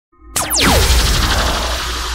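Intro logo sting: a sudden hit about a third of a second in, with fast falling whooshes over a deep low boom, then a held, ringing musical tone.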